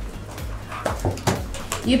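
Spiral notebooks being handled and set down on a table: a few short knocks and paper slides, over low background music.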